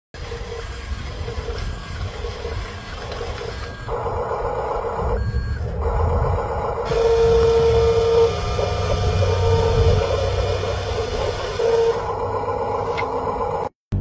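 Huina remote-control construction truck driving over rough concrete, its electric drive motor and gears running, while its sound module sounds intermittent reversing beeps. The sound cuts off abruptly just before the end.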